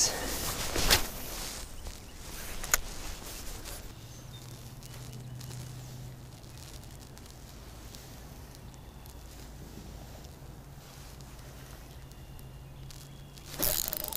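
Handling noise from a spinning rod and reel being worked: a few sharp knocks in the first few seconds, then a faint steady low hum that stops near the end.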